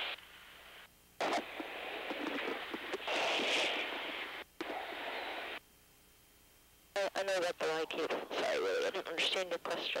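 Radio-style hiss on the crew's intercom audio, switched on abruptly about a second in and cut off just as abruptly after about four seconds. Crew voices follow on the same channel near the end.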